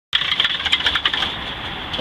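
Caterpillar diesel engine running, with a rapid clatter of ticks over the first second or so that then settles to a steadier sound.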